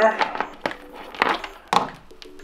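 A few knocks and rustles from a long SCART cable and its plug being handled, with a sharp knock near the end.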